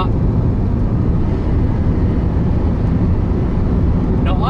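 In-cabin driving noise of a 1995 Audi A6 estate with a 2.8-litre V6, cruising on an open road: a steady, even low rumble of engine and road noise.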